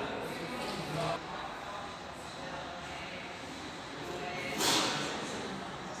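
Indistinct background voices in a large showroom hall, with a short rush of hiss about three-quarters of the way through.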